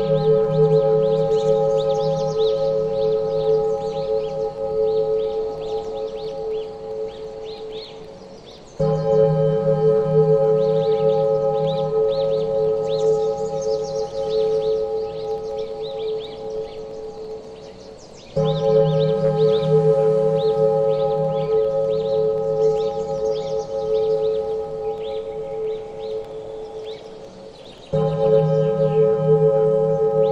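Meditation track of a deep singing-bowl tone struck about every nine and a half seconds, twice in mid-course and again at the very end. Each strike rings with a low hum and several steady overtones, fading slowly until the next.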